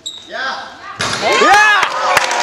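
Several voices shouting loudly in a large sports hall about a second in, their calls rising and falling in pitch. A few sharp knocks come near the end.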